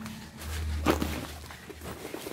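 Handling noise: a low rumble with light rustling, and one brief knock about a second in.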